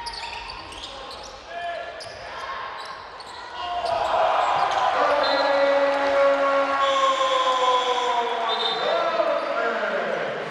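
Live basketball game sound in an arena: the ball bouncing and sneakers squeaking on the hardwood court, then from about three and a half seconds in the crowd gets louder, with long held voices that slowly fall in pitch.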